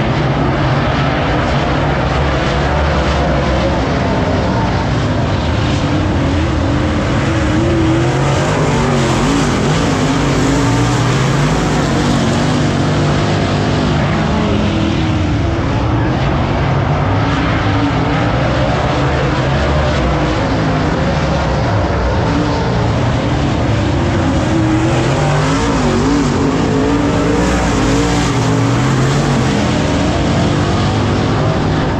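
A field of dirt late model race cars running laps on a dirt oval, their V8 engines loud and continuous, revving up and down in pitch as the cars go around.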